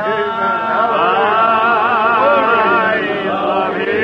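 Congregation singing a slow hymn, with held notes that waver in pitch, heard through an old, narrow-band recording.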